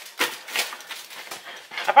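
Dull pizza cutter wheel rolling through a crisp, crunchy pizza crust and scraping on the metal pizza pan: a run of small crackles and scrapes.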